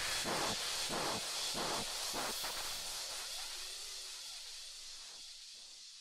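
The tail of an electronic background track dying away: a hissing wash with faint beats repeating about twice a second that thin out in the first half, while the whole sound fades steadily toward silence.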